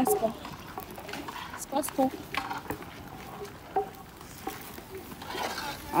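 Long wooden paddle stirring and scraping rice in a large cast-iron pot, with a few scattered knocks, under faint background voices.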